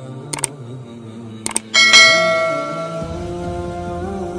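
Subscribe-button sound effects over background music: a quick double mouse click, another double click, then a bright notification bell chime about two seconds in that rings on and slowly fades.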